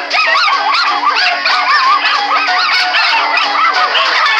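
A crowd of cartoon puppies yipping and barking together in many overlapping high calls, over a soundtrack of music.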